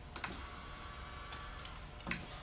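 Olide-120B automatic swing door opener running quietly through its closing cycle: a faint thin whine with a few light ticks.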